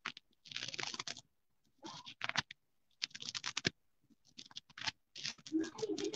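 Computer keyboard typing in short bursts of rapid keystrokes, with brief pauses between the bursts.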